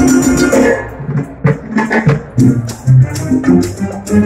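Symphony orchestra playing live, strings with percussion, a shaker-like rattle running over the music. The playing turns from held notes to short, sharply accented chords about a second in.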